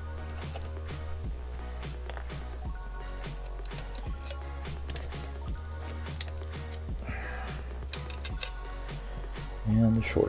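Background music with a steady, repeating bass line, over faint clicks and clinks of small screws being picked out of a metal parts dish.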